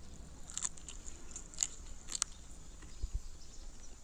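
A person chewing a piece of chicken wing with the mouth open to a close microphone: faint wet mouth clicks and smacks, a few sharper ones, and a dull low thump about three seconds in.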